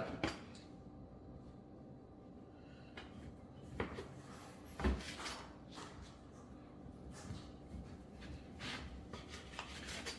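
Large Victorinox knife slicing through a cold slab of smoked bacon, with a few knocks as the blade meets the plastic cutting board, the loudest about four and five seconds in.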